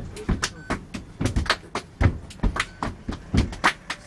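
A rhythm group's percussive beat: sharp hits and deep kick-like thumps at about two to three a second, in a steady groove.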